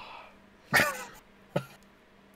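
A man coughing: one loud cough about three-quarters of a second in, then a shorter, weaker one about a second later.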